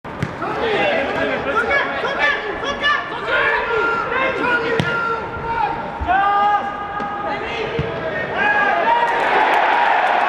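Footballers shouting and calling to each other on the pitch, with a few sharp thuds of the ball being kicked. Near the end a wash of cheering comes up as the goal goes in.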